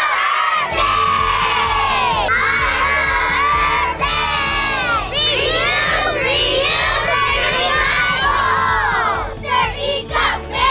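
A crowd of children shouting and cheering together, loud and sustained, many voices overlapping; near the end the shouting breaks up into short separate bursts.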